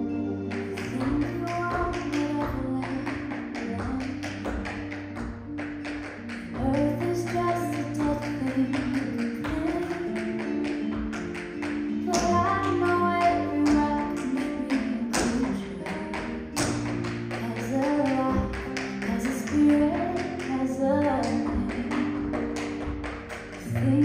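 Tap shoes striking a stage floor in a tap dance routine: quick runs of sharp taps over recorded accompaniment music with a melody and a sustained bass line.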